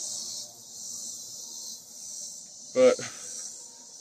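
Steady high-pitched chorus of insects, crickets or similar, shrilling without pause, with a single spoken word about three quarters of the way through.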